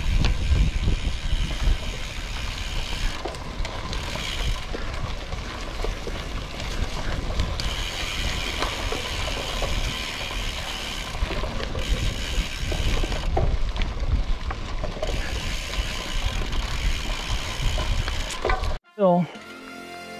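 Framed Basswood Carbon gravel bike riding over a dirt and leaf singletrack: steady tyre and trail rumble, with the drivetrain clicking and rattling over the bumps. About a second before the end it cuts off suddenly and music starts.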